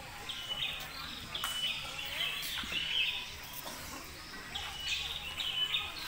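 Birds chirping in short, high-pitched phrases repeated every second or so, with faint voices in the background.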